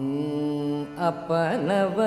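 Carnatic vocal over a tanpura drone: a long held note, then from about a second in the voice sweeps and shakes through quick ornamented turns (gamakas).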